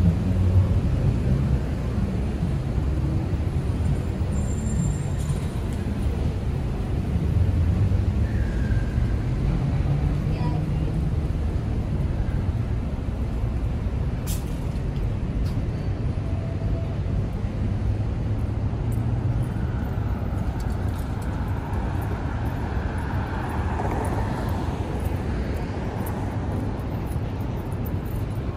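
City street traffic: a steady low rumble of passing cars and idling engines, with people's voices nearby.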